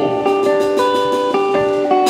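Electric and acoustic guitars playing live, a melodic line of held notes that change about every half second, with no singing.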